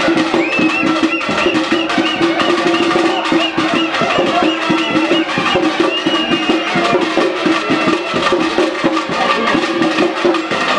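Traditional festival procession music: fast, dense drumming with a high piping melody over a steady held note.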